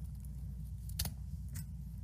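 A steady low hum with a few faint small clicks, the clearest about a second in.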